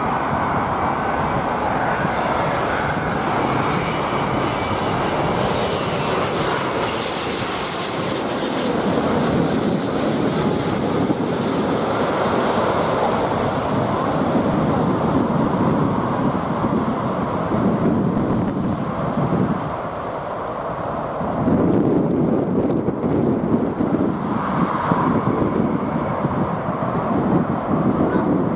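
Jet airliner's engines roaring as it comes in to land low overhead, with a high whine building over the first half. After a brief dip about two-thirds of the way through, a deeper, louder roar follows as the aircraft is on the runway.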